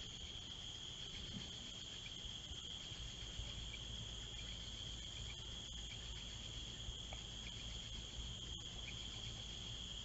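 Steady chorus of night-singing insects: a continuous high-pitched trill with no break, over a faint low rumble.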